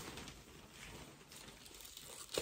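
Faint rustling of clothes being handled, with a soft brush at the start.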